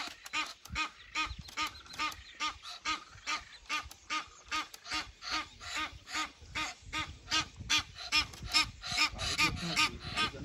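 A duck quacking over and over in a steady run of short calls, about two to three a second.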